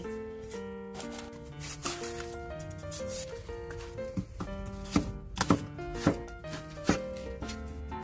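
A Chinese cleaver slicing napa cabbage stems on a wooden cutting board, a run of sharp knife strikes against the board that come quicker and louder in the second half, over background music.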